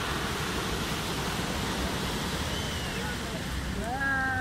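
Sea surf breaking and washing up a pebble beach, a steady rush of breaking waves.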